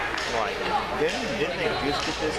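Crowd chatter: many voices talking over one another, echoing in a large indoor hall.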